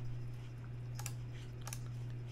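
A few sharp computer mouse clicks over a steady low hum.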